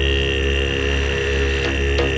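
Electronic techno music in a breakdown: a held synth chord sustained over a deep bass, with no drums.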